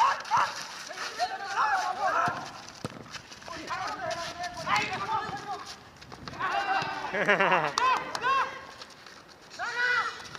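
Several men shouting and calling out to each other while playing football, in short bursts of a second or so with quieter gaps between.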